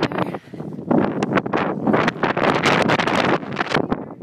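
Strong wind buffeting an iPhone's microphone: loud noise that surges and drops in uneven gusts.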